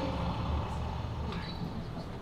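Sound effect of a bus arriving, its engine rumbling low and steady, played over the auditorium speakers.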